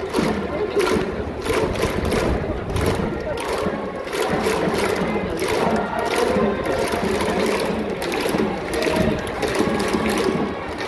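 Japanese baseball outfield cheering section: a large crowd chanting in unison over a steady beat of drums and clapping, about three beats a second, with trumpets.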